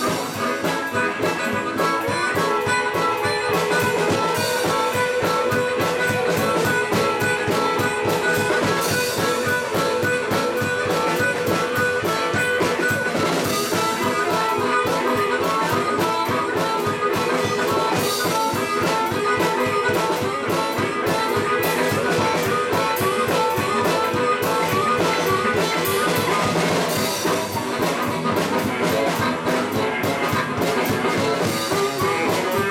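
Live blues band: an amplified harmonica played into a hand-held microphone, with held notes and quick repeated notes, over electric guitar and drum kit.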